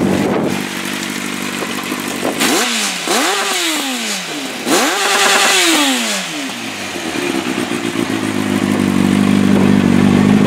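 2003 Yamaha R1's inline-four engine, heard through a Micron slip-on muffler, idling and then revved twice, each rev rising and falling in pitch, the second held briefly at the top, before it settles back to idle. The engine has just been restarted after years of sitting and is blowing a lot of carbon out of the exhaust.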